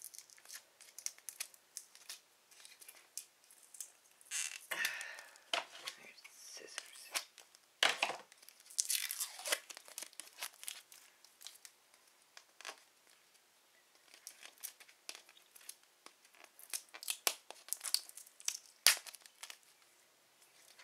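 Plastic shrink-wrap being picked at and peeled off a plastic toy capsule: irregular crinkling and tearing in short, scattered bursts as the stubborn wrapping comes away bit by bit.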